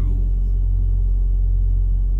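Steady low rumble and hum of an idling semi-truck diesel engine.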